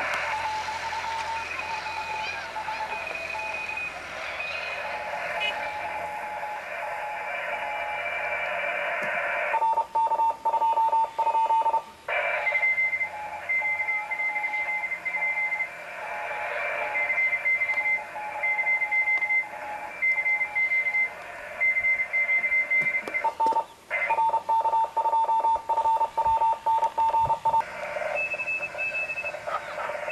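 Radio receiver audio: electronic tones at two pitches beeping on and off in dashes over a steady hiss, with stretches of rapid ticking.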